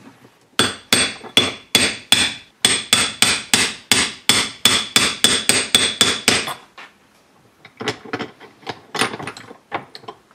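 Hammer blows on a steel hex-shaft bearing punch, driving a needle roller bearing in the bore of a steel gear held in a vise: a fast, steady run of about twenty ringing metal strikes, three or four a second. They stop after about six and a half seconds, and a few lighter, irregular metal knocks follow near the end.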